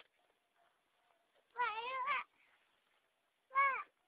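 Two high-pitched, wavering, meow-like cries from a voice: a longer one about one and a half seconds in and a short one near the end.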